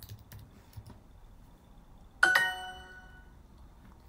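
A few light computer-keyboard typing clicks, then about two seconds in a bright chime rings out and fades over about a second: the Duolingo app's correct-answer sound.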